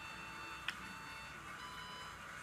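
Quiet room tone with faint steady tones and one short, sharp click of small plastic toys knocking together about two-thirds of a second in.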